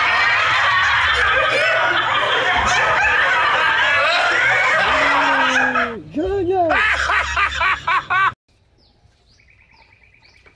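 Loud laughter and voices, with a falling, wobbling pitch glide about five to six seconds in. It cuts off abruptly about eight seconds in, leaving only faint bird chirps.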